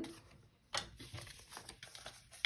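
Paper banknotes rustling and crinkling as a small stack is picked up off a table. There is a sharper crackle about three quarters of a second in, then a few softer ones.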